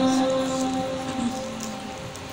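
A woman's held sung note in a devotional hamd, sung into a handheld microphone, fading out over the first second and a half, then a steady hiss of background noise.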